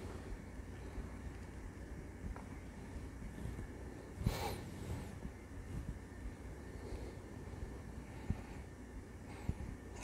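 Quiet background with a steady low hum and a few faint handling knocks, and one short breathy rush of noise a little past four seconds in.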